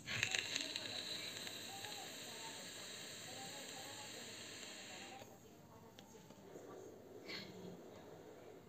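Faint hiss of a long draw on a VOOPOO Drag X pod vape with its airflow vent closed to the minimum, lasting about five seconds and stopping suddenly. A faint puff of breath follows near the end as the vapour is blown out.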